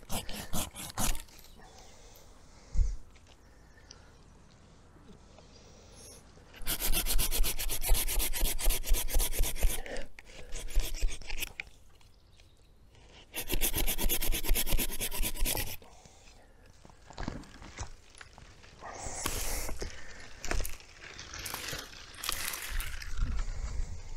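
Small pruning handsaw cutting through hazel stems in two bouts of quick, even back-and-forth strokes, each a few seconds long. Near the end, cut branches rustle and scrape as they are dragged out through the bush.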